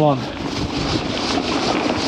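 Steady wind noise on the microphone mixed with the rumble of tyres rolling over a gravel track as a gravel bike is ridden along at speed.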